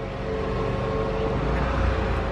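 An engine running steadily, a low rumble with a steady hum over it that grows a little louder toward the end.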